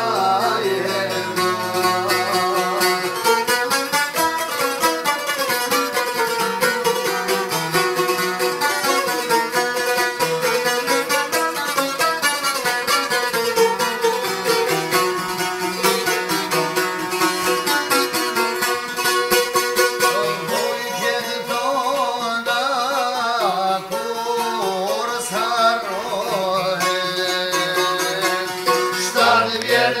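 Long-necked Albanian folk lutes rapidly strummed together in a folk tune, with a man singing over them.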